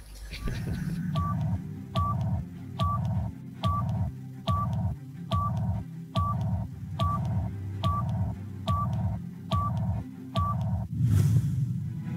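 Electronic countdown sting for a TV programme break: about a dozen short beeps, each with a click, roughly one a second, over a pulsing low bass. It ends in a whoosh in the last second.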